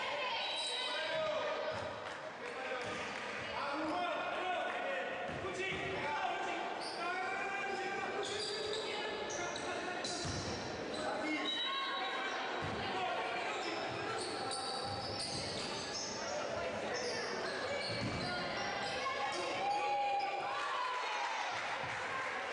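A basketball bouncing on a wooden gym floor, a thud every few seconds, with players' and spectators' voices calling out in a large, echoing hall.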